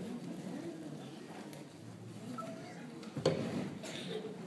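A hushed pause in an auditorium before the band plays: faint audience murmur, with a single sharp knock a little after three seconds in.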